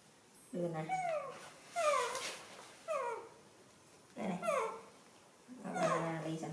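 Baby monkey giving a run of short high cries, each sliding down in pitch, about one a second.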